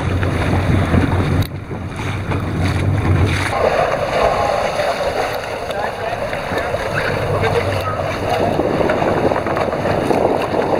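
Wind buffeting the microphone over sea water washing around a boat's hull. A low boat-engine hum runs until about three and a half seconds in, and a rushing wind noise carries on after it.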